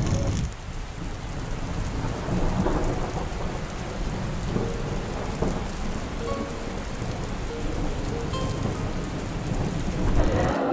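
Heavy rain falling steadily, with a deep low rumble underneath like distant thunder: a rainstorm ambience on a film soundtrack.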